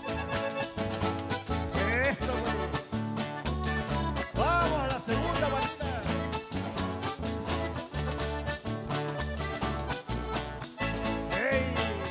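Live folk band playing an upbeat tune on acoustic guitars and button accordion over a steady bass beat.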